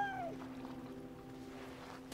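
A harp seal's call: one short, cat-like cry that rises and then falls in pitch, dying away just after the start, over soft held music notes.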